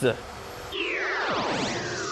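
Cartoon scene-transition sound effect: a cluster of electronic tones sweeping down and up in pitch across one another, starting just under a second in.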